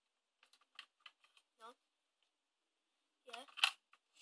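A few light plastic clicks and taps from AAA batteries being fitted into the battery compartment of a Nerf Firestrike blaster, in the first second and a half, followed by a short spoken "no" and "yeah".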